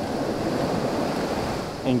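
Sea surf washing onto a sandy beach, a steady rush of water noise.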